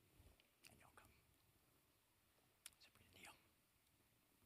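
Near silence: room tone, with faint whispered voices and small clicks twice, about a second in and about three seconds in.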